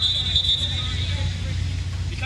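A referee's whistle blast, held about a second and fading, over a steady low stadium rumble.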